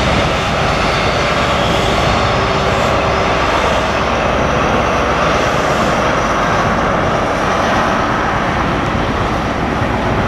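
Diesel trains running on the far track: a Grand Central HST moving away, then a Direct Rail Services Class 66 locomotive with its two-stroke diesel engine running. A loud, steady engine noise with no sharp knocks or breaks.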